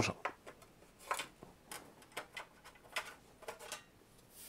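A dozen or so light, irregular clicks and knocks as the clip-on top cover of a Shuttle DS61 mini PC is unclipped and lifted off its chassis.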